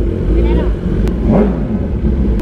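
Kawasaki ZX-10R's inline-four engine running as the motorcycle rides off, with one short rev that rises and falls in pitch about halfway through, over a steady low rumble.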